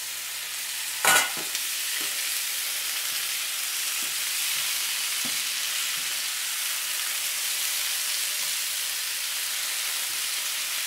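Parboiled squid tipped into a hot oiled non-stick pan, landing with one loud hit about a second in, then sizzling steadily in the oil with black bean sauce and onions. A spatula scrapes and taps a few times as it is stirred.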